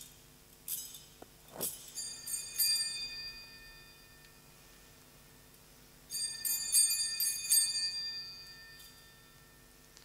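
Altar bells shaken in two bouts of ringing, about two seconds in and again about six seconds in, each peal with several strikes that ring out and die away. They are rung at the elevation of the host during the consecration.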